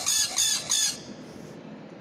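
Parrot squawking: four harsh, high calls in quick succession in the first second.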